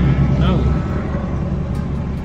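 Low, steady rumble of a car idling, heard from inside the cabin, a little louder in the first second.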